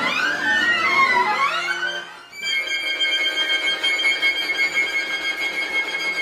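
Contemporary chamber music for flute, clarinet, violin, cello and accordion played live. Several pitches slide up and down in glissandi for about two seconds, then the sound briefly drops away. After that a steady cluster of high held notes takes over.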